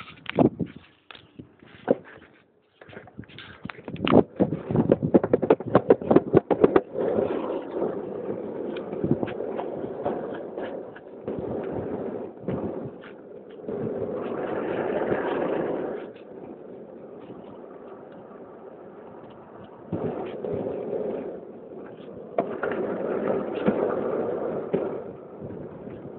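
Longboard wheels rolling down a paved street, a steady rough rumble that swells louder around the middle and again near the end as the board picks up speed. In the first few seconds there is a rapid run of clicks and knocks as the ride gets under way.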